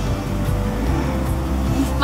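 Background music: a steady low instrumental bed with no speech.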